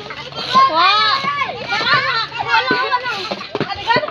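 Several children shouting and calling out at once, high voices overlapping one another.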